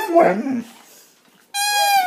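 A dog's pitched vocalizing breaks off about half a second in. After a second of near quiet, a long, high-pitched dog whine begins and slowly drops in pitch.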